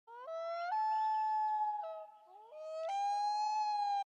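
Common loon wailing: two long calls, each climbing in pitch in distinct jumps and then held, with a short dip between them about two seconds in.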